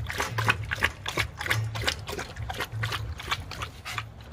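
Rottweiler lapping water from a stainless steel bowl, with a rhythmic run of wet laps and splashes.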